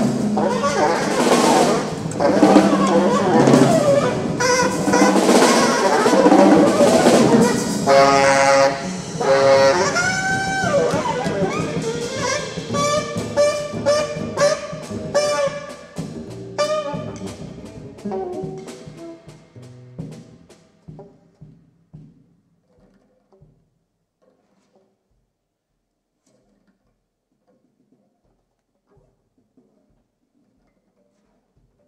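Free-improvised jazz from alto saxophone, double bass and drum kit, playing loud and dense with busy drumming. From about eight seconds in the playing thins to separate short pitched notes that grow sparser and quieter, dying away around twenty seconds in, and near silence follows.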